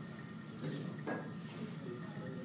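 Quiet room tone with a faint steady hum, and a brief soft knock about a second in.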